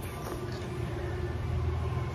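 A steady low rumble, like a vehicle engine running.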